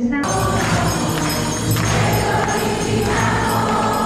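A choir singing a hymn with instrumental accompaniment, cutting in abruptly just after the start.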